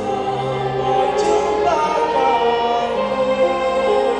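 Student string orchestra accompanying several singers on microphones in a sustained, steady orchestral pop-song arrangement, the voices singing together over held string chords.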